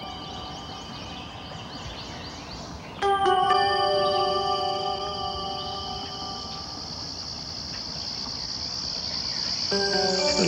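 Slow ambient music of long held chords, with a new, louder chord entering suddenly about three seconds in. A steady high drone of insects runs beneath it.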